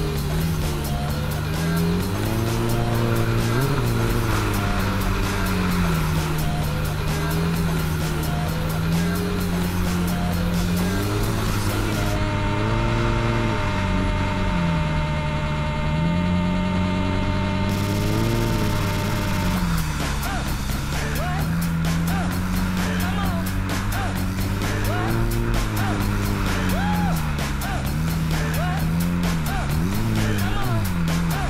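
Hydrospace S4 stand-up jet ski engine running under load, its pitch rising and falling several times as the throttle is worked, with water rushing and spraying. Music plays alongside.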